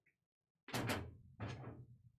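Two short, loud scraping noises about two-thirds of a second apart, the second fading out, as a person moves about the desk and room while getting up from the chair.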